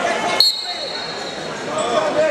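A referee's whistle blast about half a second in: one sharp start, then a steady high tone for about a second that fades, over shouting from the crowd in a gym.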